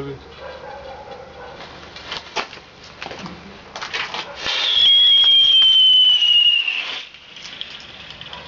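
A lit firecracker sputters with a few sharp cracks, then gives a loud hissing whistle that falls slowly in pitch for about two and a half seconds before cutting off.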